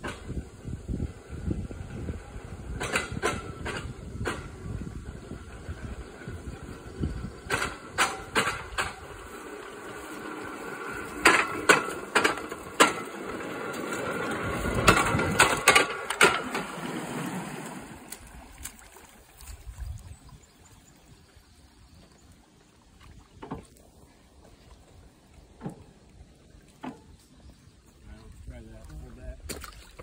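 Footsteps through brush with metal clanks and knocks from a wheeled boat-tram cart and its rusty pipe rails. A rushing noise builds for several seconds, peaks with a run of sharp knocks, then dies away into a quieter stretch with scattered ticks.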